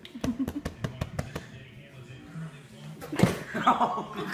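A quick run of sharp taps and knocks on a hardwood floor in the first second and a half, then a loud thud about three seconds in, followed by voices.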